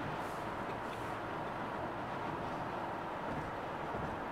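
Steady background din of a crowded convention hall: an even noise with no distinct events.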